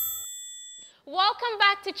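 A single bright chime struck once, ringing high and fading away over about a second, as a sound effect closing a logo sting. A voice starts speaking about a second in.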